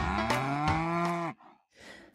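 A cow mooing: one long, low call that rises at first, then holds, and breaks off after about a second and a quarter.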